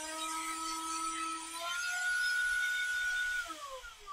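Cordless handheld electric air duster's high-speed motor and fan running with a steady whine, stepping up to a higher pitch a little under two seconds in as the trigger is tapped to the next speed, then winding down near the end as it is switched off.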